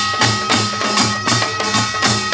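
Korean pungmul folk percussion: buk barrel drums and small sogo hand drums beating a fast, even rhythm of about five strokes a second, with a held high tone over the drumming.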